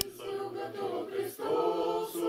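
Small unaccompanied choir singing an Orthodox church chant in long held notes, with a brief break for breath about a second and a half in.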